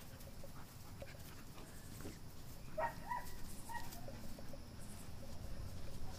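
A puppy whimpering a few times, short and high-pitched, about halfway through, while she wrestles with another dog.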